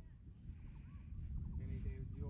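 Wind buffeting the phone's microphone in a low rumble, with faint voices of people talking now and then.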